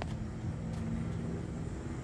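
Steady low hum and rumble of a motor vehicle engine running nearby.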